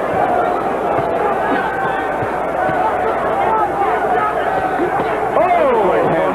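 Arena crowd at a boxing match: a steady hubbub of many voices, shouting and calling out, with one louder swooping shout near the end.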